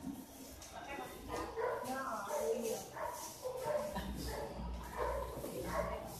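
Several people talking and laughing, with no clear words.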